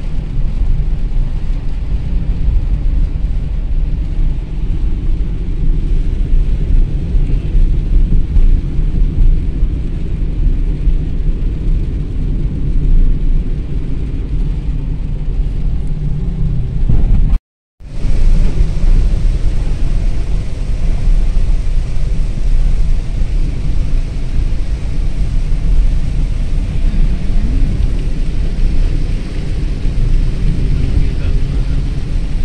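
Loud, steady rumble inside a moving car on a rain-soaked road: engine and tyre noise mixed with rain hitting the car. The sound drops out for a moment a little past halfway.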